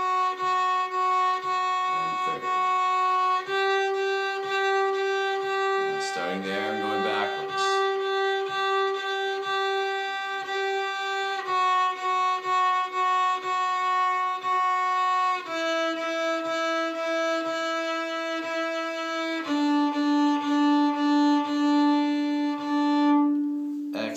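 Fiddle bowed on the D string in the 'tucka' rhythm (four short strokes, two long), playing a fingering exercise: second finger, third finger, then back down through second and first finger to open D, each note repeated for about four seconds. The pitch steps up once and then down three times, and the bowing stops just before the end.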